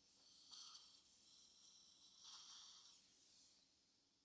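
Near silence: a faint steady hiss, swelling softly twice, about half a second in and again around the middle.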